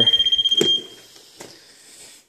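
A moisture meter's probe sounding a steady high-pitched beep as it touches a wet baseboard, its alert that moisture is present. The beep cuts off about three-quarters of a second in, around a short tap.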